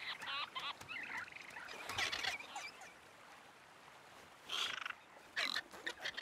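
Several short, high, wavering vocal calls in separate bursts: a cluster at the start, another about two seconds in, and two more near the end, with a quieter gap between.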